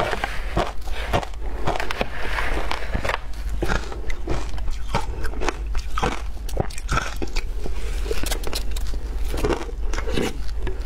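Shaved ice being crunched and chewed close to a clip-on microphone, a dense run of sharp crunches. A metal spoon also digs into the ice in a plastic container.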